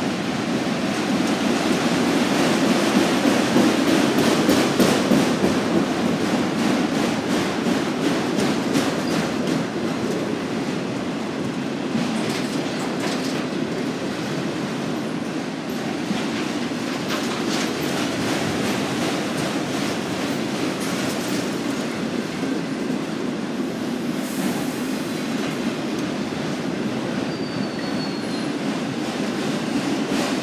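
Freight train of autorack cars rolling past at close range: a steady rail rumble with a continuous, rhythmic clickety-clack of wheels over rail joints.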